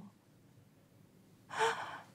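A woman's short, tearful gasp, a sharp intake of breath with a brief catch of voice, about a second and a half in after a quiet pause.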